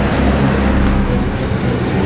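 A loud, steady low rumble under a hissing noise.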